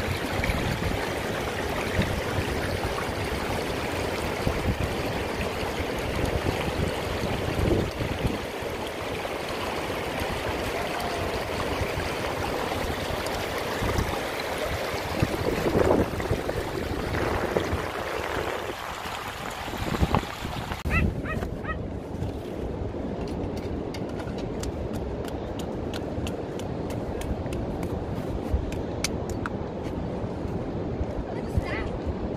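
Shallow water running and trickling over beach stones and pebbles in a steady rush. About two-thirds of the way through it gives way to a quieter sound with a quick series of small clicks.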